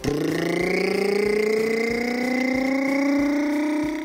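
A person's voice making a long, steady mouth-made engine noise for a toy vehicle, its pitch rising slowly throughout and stopping just at the end.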